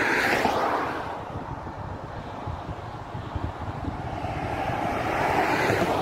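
Wind rushing over the microphone, swelling at the start, easing off in the middle and building again near the end.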